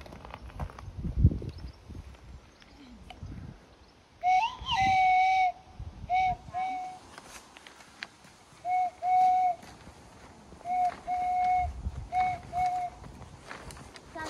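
Someone whistling: a short upward slide about four seconds in, then a long note and several groups of short notes, all at about the same pitch. A sharp knock comes about a second in.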